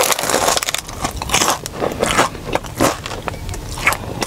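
Close-miked crunching and chewing of crisp fried food: a quick, irregular run of crackly crunches as the bite is chewed.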